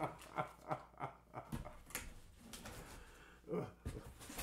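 Bubble wrap and cardboard crackling and rustling as packed items are lifted out of a box. Faint laughter trails off at the start, and there is a short vocal sound near the end.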